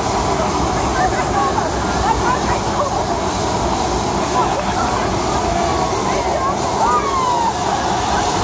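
Loud, steady outdoor background noise, a continuous rumble and hiss, with faint distant voices or shouts rising and falling through it.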